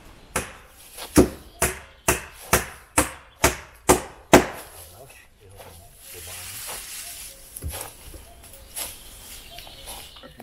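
Axe chopping wood: about nine sharp blows roughly two a second, growing louder, stopping after about four and a half seconds. A brief rustling and a few softer knocks follow.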